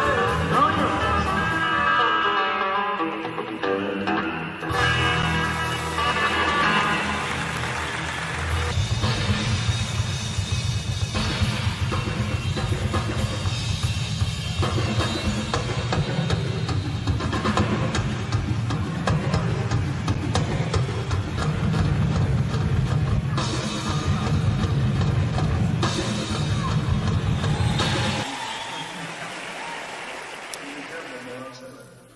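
Live band music on stage, giving way about nine seconds in to a drum solo on a full rock kit: fast rolls across the drums over the bass drum, kept up until it stops near the end.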